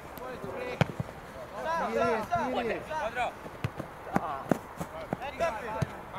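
Players shouting to one another on a football pitch, with several sharp thuds of a football being kicked or bouncing.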